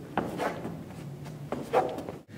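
Sneakers stepping and sliding sideways on a hard floor: a few short scuffs, some near the start and more near the end.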